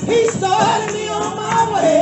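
A woman singing a gospel song through a microphone and PA, with tambourines shaken and struck along with her.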